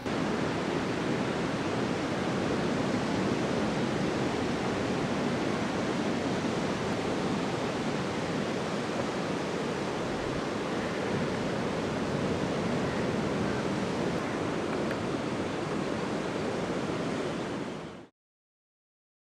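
Sea surf breaking on a sandy beach: a steady roar of waves that cuts off suddenly at the end.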